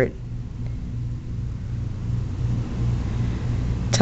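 A low, steady rumble, with no distinct sound of its own on top of it.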